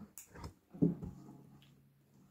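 A classical guitar strummed once about a second in, its low strings ringing and slowly fading.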